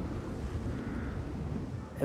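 Wind blowing in a snowstorm: a steady, low rushing noise.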